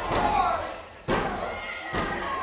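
Three sharp slaps on a wrestling ring mat about a second apart, with crowd voices under them: a referee's three-count on a pinfall.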